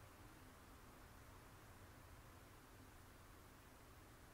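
Near silence: a faint steady hiss with a low hum underneath, the room tone of a small room.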